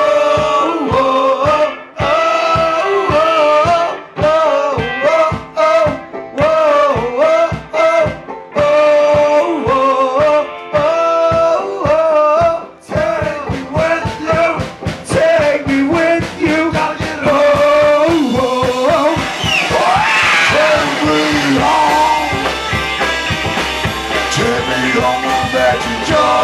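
Live band playing an uptempo song on upright bass, guitars and drums, with the drumming getting busier about halfway through.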